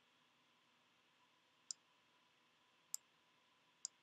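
Three sharp clicks of a computer mouse button, spaced about a second apart.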